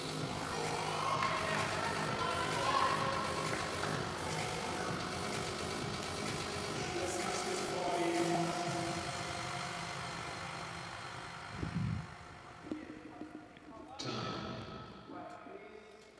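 Indistinct voices with music underneath, echoing in a large sports hall, fading out over the last few seconds. A single dull thud comes near the twelve-second mark.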